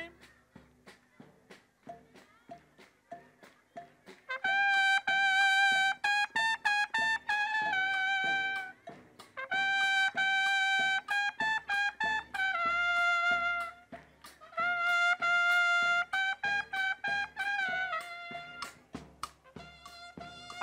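A trumpet playing a melody of long held notes in three phrases, entering about four seconds in, over a steady bass-drum beat. Before the trumpet comes in, only the drum beat is heard.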